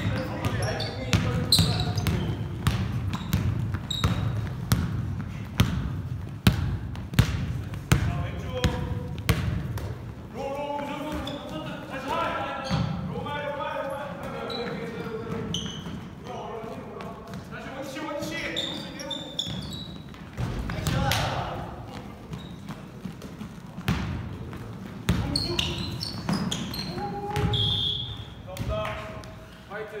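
A basketball bouncing on a wooden gym floor during a game, many sharp bounces in the first ten seconds or so, with players' voices calling out over the play through the middle and near the end, in a large gymnasium.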